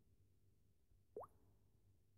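Near silence, broken about a second in by one brief plop that rises quickly in pitch.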